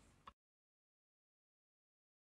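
Silence: the sound track drops out completely a fraction of a second in and stays dead.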